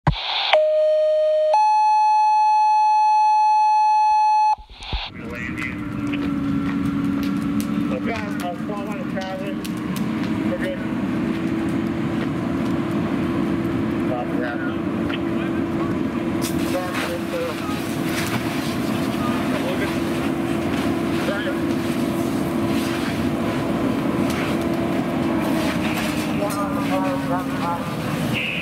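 Two-tone sequential dispatch paging tones: a short lower tone, then a longer, higher steady tone. After them comes the steady drone of a fire apparatus engine running at a working fire, under bits of voices and radio chatter.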